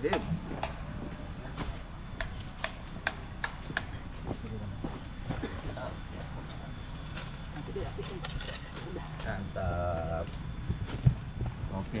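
Irregular knocks and scrapes of a digging tool and hands working dry soil while a tree seedling is planted, with brief voices in the background near the end.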